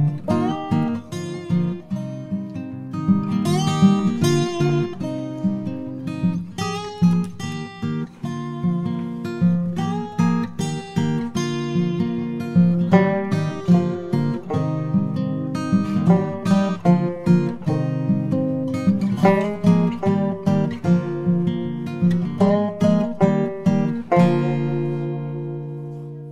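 Background music: an acoustic guitar playing a run of plucked notes, ending on a held chord about 24 seconds in that rings on and fades.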